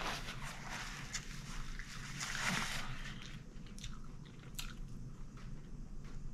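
Close-up eating mouth sounds: irregular chewing and wet smacks, with paper towel rustling against the mouth near the start.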